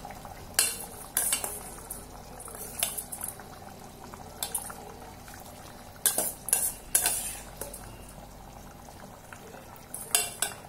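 A steel ladle clinking and scraping against the rim and sides of a stainless steel pressure cooker as rice is stirred into simmering gravy, in irregular sharp knocks with a cluster around six to seven seconds in. Under it the gravy bubbles faintly and steadily.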